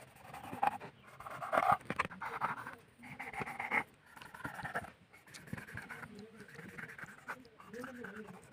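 Kitchen knife cutting through a snakehead fish's scaly skin on a wooden chopping board, with scattered small clicks and scrapes. Faint voice-like sounds run behind it and are the loudest part, strongest about two seconds in and again near the middle.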